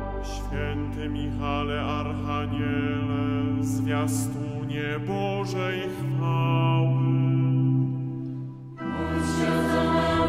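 Choir singing a chanted Polish Catholic prayer in held, sustained chords, with a brief break near the end before the next phrase begins.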